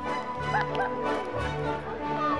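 Background music with sustained held notes, and a dog making a few short high-pitched cries about half a second in.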